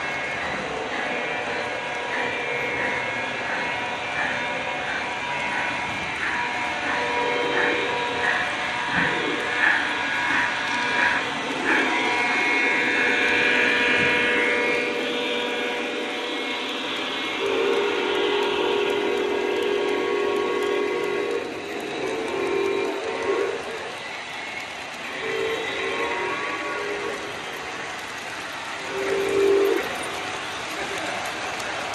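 Electronic sound effects from O-gauge model locomotives running on a layout. A bell rings about twice a second for the first ten seconds or so, a high whistle blows for about two seconds, then a deeper horn gives one long blast followed by several shorter ones near the end. Steady running noise from the trains lies beneath it all.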